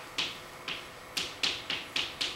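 Chalk tapping and scratching on a blackboard as characters are written: about six short, sharp clicks at uneven spacing over two seconds.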